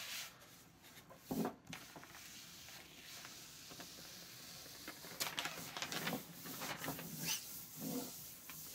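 Clear self-adhesive shelf liner being laid onto paper: its backing sheet crinkling as it is peeled back and the film rubbed flat by hand. Faint, with a sharper crackle about a second and a half in and a few more irregular crinkles later on.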